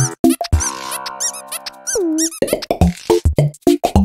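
Playful cartoon background music with a quick, steady electronic beat. About half a second in, a held chord with a run of high squeaky chirps comes in over it and ends about two seconds in with a falling slide, after which the beat carries on.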